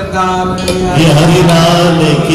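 A male voice chanting a devotional melody, with a steady low drone beneath it; the singing grows louder about a second in.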